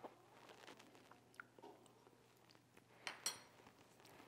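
Near silence with faint mouth and lip sounds of someone tasting sauce off a spoon, and two short soft clicks about three seconds in.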